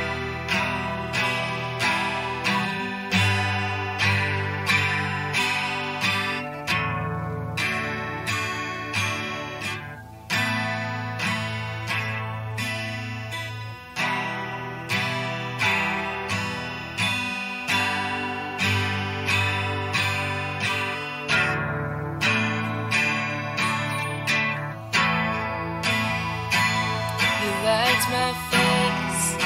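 Instrumental song intro led by an acoustic guitar playing a steady, evenly repeated chord pattern, with low notes held underneath.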